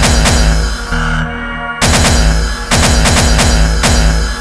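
Hardcore gabba track at 140 BPM, made from 8-bit samples in FastTracker II: repeated heavy kick drums whose pitch drops on each hit, with a brief thinner stretch just after a second in, then a quick run of kicks.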